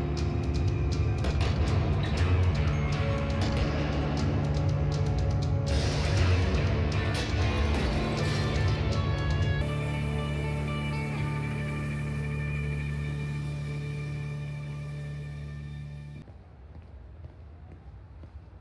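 Film trailer score: a fast ticking rhythm over a steady low drone, giving way about ten seconds in to held chords. The music cuts off suddenly near the end, leaving a much quieter background.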